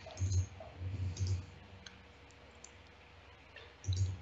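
A few light computer mouse clicks, with some soft low thumps, as chess moves are made on an online board; mostly in the first second and a half, with one more near the end.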